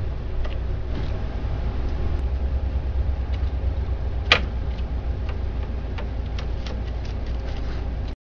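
A single sharp plastic click about four seconds in, with a few faint ticks around it, as a laser printer's transfer roller bearing is pressed into its slot. A steady low hum runs underneath.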